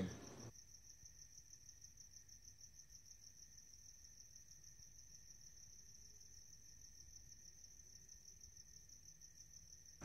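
Faint, steady chirring of crickets: night-time insect ambience.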